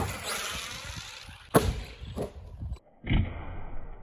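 Arrma Granite 3S brushless RC monster truck flying off a ramp, with a fading noise as it goes airborne, then a hard thud as it lands about a second and a half in and a smaller knock soon after. The sound cuts out briefly near the three-second mark, then comes another thump as the truck lands and bounces again.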